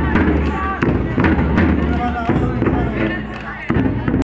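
Voices of a group of schoolchildren calling out on an open field, broken by several sharp cracks, with wind rumbling on the microphone.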